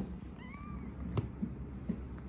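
A young kitten gives one short, thin mew about half a second in, its pitch rising and then falling. A light tap follows about a second in.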